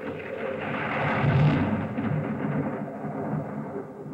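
Thunder sound effect from a film soundtrack: a long rolling rumble that swells to its loudest about a second and a half in, then rolls on. It is heard from a TV's speakers across a hall.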